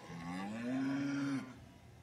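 A cow mooing once, a single call of about a second and a half that rises slightly in pitch and drops away at the end.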